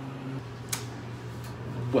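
Steady low hum inside an elevator cab, with a single sharp click about three-quarters of a second in.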